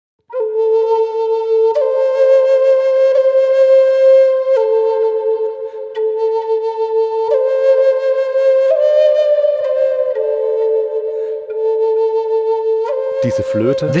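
Solo flute playing a slow melody of long held notes, changing about every second and a half. The tone drones in the low mids, an unwanted resonance that calls for an EQ cut.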